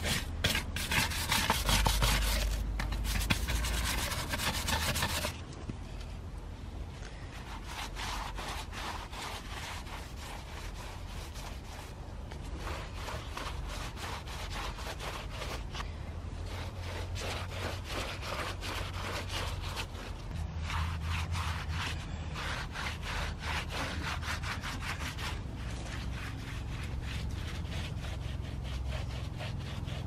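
A brush scrubbing rapidly and repeatedly across a woven wicker planter, scraping off its worn, flaking finish; loudest for about the first five seconds. After that come softer, steady rubbing strokes on the wicker as a rag wipes dark wood stain onto it.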